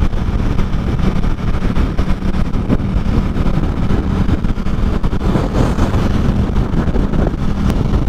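Sport motorcycle cruising steadily at freeway speed: a constant engine drone under wind noise on the microphone.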